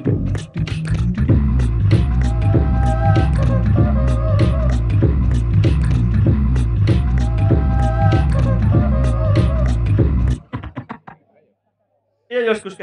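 Live-looped beatbox techno from a Boss RC-505mk2 loop station: layered mouth-percussion hits over a heavy bass pulse, with held tones above. It cuts off abruptly about ten seconds in, stutters briefly, then goes silent.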